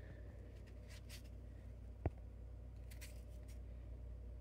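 Faint handling of a JBL Flip 6 Bluetooth speaker in the hand, light rubbing and rustling over a steady low hum, with one sharp click about halfway through.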